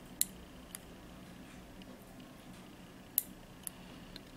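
Nail clipper snipping gel-coated, cured silk yarn at the edge of a nail tip: two pairs of sharp clicks, one just after the start and one about three seconds in, the first click of each pair the louder. The cured gel stiffens the thread, so the cut gives a hard click.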